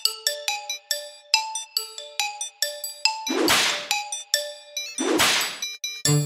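Background music of short, bright bell-like notes in a bouncy pattern. Two brief noisy whooshes come in about three and a half and five seconds in.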